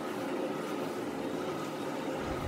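Steady, even background hiss with no distinct knocks, scrapes or other events.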